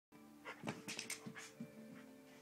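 Border collie shaking a soft fabric toy hard: a quick, irregular run of short rustling, flapping bursts, fairly faint.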